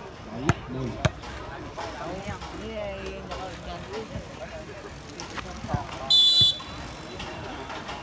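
Referee's whistle gives one short, shrill blast a little after six seconds in, the signal to serve. Earlier come two sharp thumps of a volleyball bounced on the concrete court, with voices of players and onlookers throughout.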